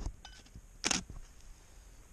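Handling noise from a handheld camera: a sharp knock at the start and a few small clicks, then a short rustling scrape about a second in.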